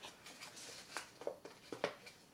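Faint handling noise from plastic and card packaging: a few soft clicks and rustles in the second half.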